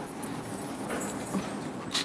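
Dry-erase marker and eraser working on a whiteboard: light taps and scrapes, with a sharper tap near the end.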